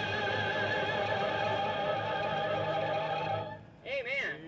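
A woman singing a long held closing note of a gospel hymn into a microphone, with a wavering vibrato. The note ends a little over three seconds in, followed by a short voice sound right at the end.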